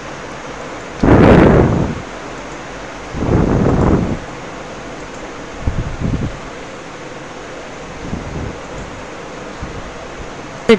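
Two loud bursts of rustling noise close to the microphone, about a second in and about three seconds in, then a few fainter ones, over a steady background hiss.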